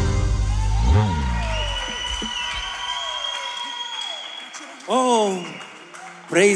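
Live gospel band ending a song: a final low band hit about a second in, then a held keyboard chord that fades away, with light applause. A man's voice calls out briefly near the end.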